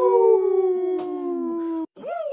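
A long drawn-out howl-like vocal cry, held for almost two seconds and sagging slowly in pitch, then cut off abruptly just before the end.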